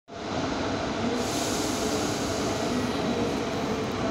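Electric trains at a station: a steady running rumble with a low hum, and a hiss that comes up about a second in.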